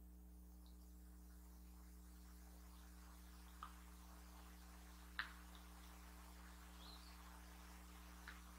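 Near silence: room tone with a steady low hum and two faint clicks, about three and a half and five seconds in.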